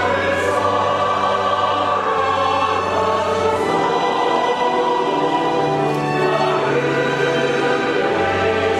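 Church choir singing a sacred anthem in sustained chords, accompanied by a chamber orchestra.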